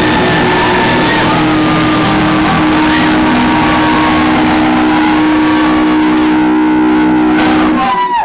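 A live rock band's loud, distorted electric guitars sustaining a droning chord, with high sliding tones wavering over it.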